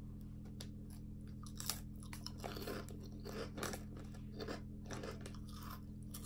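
A person biting into and chewing a crunchy puffed corn snack, with irregular crunches starting a little under two seconds in, over a steady low hum.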